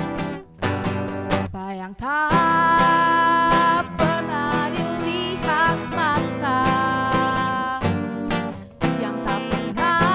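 Acoustic guitar strummed alone for about two seconds as an intro, then a woman's voice sings the melody into a microphone over the strummed guitar, holding long notes.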